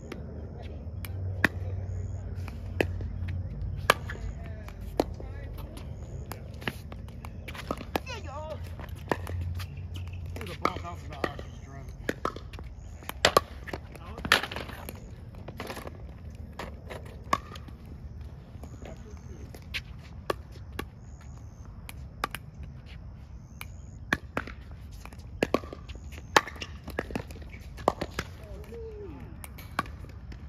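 Pickleball paddles striking the plastic ball and the ball bouncing on the hard court: sharp pops at irregular intervals, a couple of dozen across the stretch, with faint talk in between.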